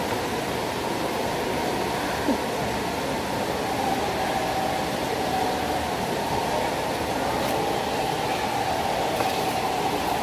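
Steady background noise of a mall food court, with a faint steady hum joining about four seconds in.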